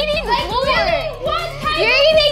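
Children's voices over background music with a steady low backing.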